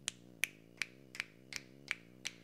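Fingers snapping in a steady beat, about three snaps a second, over a faint tune.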